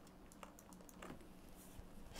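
Faint, irregular clicks of computer keyboard keys being pressed, several in quick succession.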